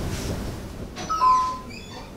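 A two-note ding-dong chime about a second in, just after a faint click: a higher tone, then a lower one held for about half a second.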